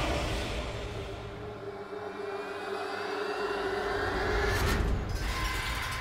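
Suspenseful background score: a held low drone under a slowly rising tone, with a whoosh about five seconds in.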